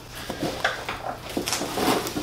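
Cardboard packaging being handled as packing inserts and a wrapped machine are pulled out of a cardboard box: several short knocks and scrapes of cardboard over light rustling.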